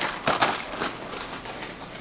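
Rustling and handling noise of a canvas tote bag being pulled over and opened, with a light knock near the start.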